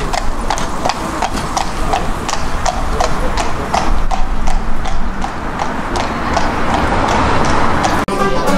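Hooves of a horse pulling a carriage clip-clopping on an asphalt road at a trot, a steady even beat of about three strikes a second.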